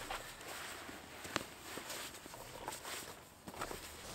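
Faint handling sounds: a backpack rustling as it is swung off the shoulder and opened, with a few light clicks and taps as a folded drone is taken out.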